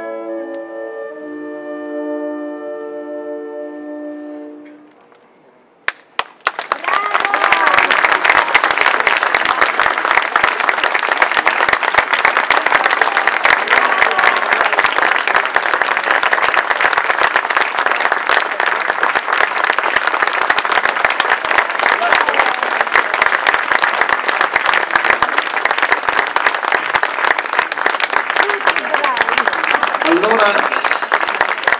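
The final sustained chord of a flute and wind ensemble, fading out over the first few seconds. After a brief hush, audience applause breaks out about six seconds in and carries on steadily, with voices calling out in it.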